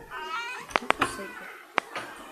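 A cat meowing: one short, wavering, high-pitched call, followed by a few sharp clicks.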